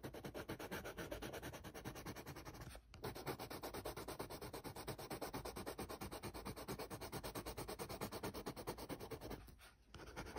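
Pencil scratching on paper in rapid back-and-forth shading strokes, with a brief pause about three seconds in and another just before the end.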